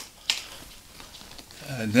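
A short pause in a man's speech: quiet room tone with one brief click, likely from his mouth, before his voice starts again near the end.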